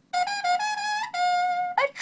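A short trumpet phrase of about five notes, the last held longest, played back through a Bubble Guppies toy playset's small electronic speaker when its button is pressed.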